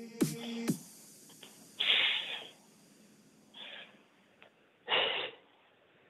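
Electronic workout music with a steady beat stops under a second in. Then a person breathes out heavily three times, about a second and a half apart, winded from plank outs.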